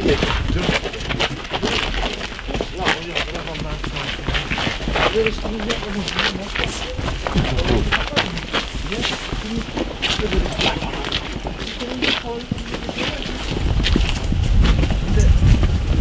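Footsteps of a group walking on a stony dirt path, many short scuffs and crunches, with indistinct voices under them. A low rumble builds near the end.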